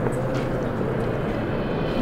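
Steady low rumble of outdoor city ambience, the hum of distant traffic.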